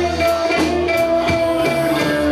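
A live blues-rock band playing, with electric guitar and a steady drum-kit beat under a long held lead note that slides slightly down in pitch.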